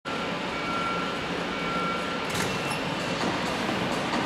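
Steady hall noise of an indoor velodrome with a faint electronic tone, then a sharp clack a little over two seconds in as a track bike is released from its starting gate. Its rear disc wheel then rolls on the wooden track with a low, even rumble.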